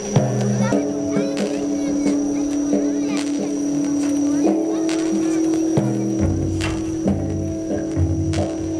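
Music with long held notes that shift pitch every second or few, joined by a deep bass line about six seconds in. A few sharp clicks and a steady thin high tone run under it.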